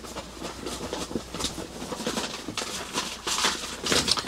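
Handling noise: a paper sheet and clothing rustling, with irregular small knocks, over a low steady hum.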